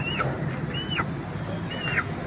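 A bird's high call, repeated about once a second, three times. Each call rises, holds briefly and then drops in pitch. A steady low hum runs underneath.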